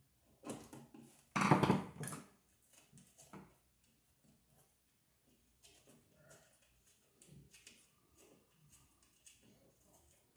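Hand-tool work at an old wall outlet: small clicks and scrapes of a screwdriver on the outlet and its metal box, with one louder scraping rustle about a second and a half in.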